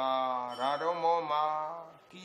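A Buddhist monk's voice chanting scripture, most likely Pali text, in a sing-song recitation on long held notes, trailing off near the end.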